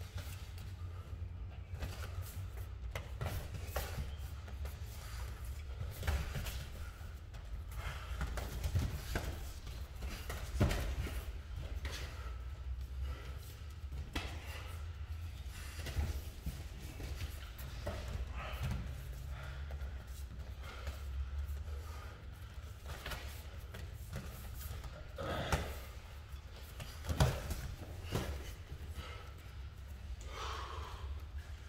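Irregular thuds and shuffles of bare and padded feet on foam mats and of gloved punches during MMA sparring, a few sharper hits standing out, over a steady low hum.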